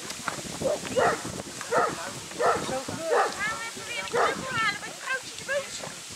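A Newfoundland dog barking repeatedly, about one bark every three-quarters of a second, with higher whining yelps mixed in during the second half.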